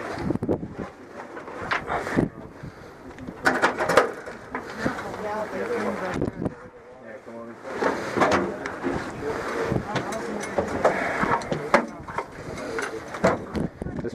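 Indistinct voices talking, with scattered knocks and rattles of gear bumping against the metal of a derelict helicopter's cabin.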